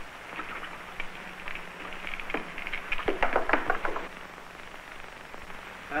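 Dice rattling in a player's hand, a run of quick clicks that thickens about two to four seconds in, over the steady hum and hiss of an old film soundtrack.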